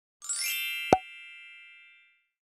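Animated-logo sound effect: a rising sparkly shimmer, a sharp pop about a second in, then a ringing chime of several tones that fades away.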